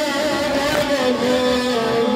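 Mourning chant for Muharram sung with long-held, wavering notes.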